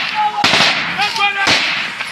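Two gunshots about a second apart, sharp cracks with a short echo, in a firefight amid men's shouts.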